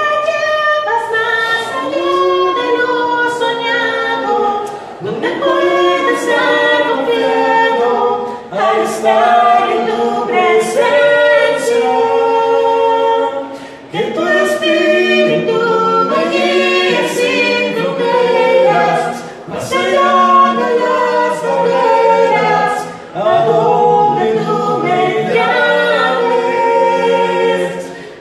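A small group of men's and a woman's voices singing a hymn a cappella in harmony, unaccompanied, in several phrases separated by short breaks for breath.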